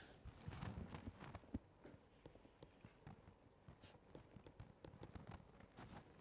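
Near silence with faint, irregular ticks and taps of a stylus writing on a tablet screen.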